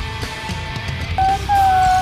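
Rock music soundtrack. Two loud high held notes come near the end, the second longer and falling slightly in pitch.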